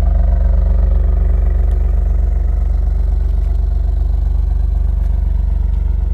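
Alfa Romeo Giulia Quadrifoglio's 2.9-litre twin-turbo V6 idling at the quad exhaust tips: a loud, low, steady exhaust note with an even pulse.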